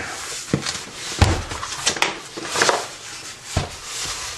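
Cardboard shipping box being handled and turned over on a countertop: about five short knocks and bumps with cardboard rustling between them.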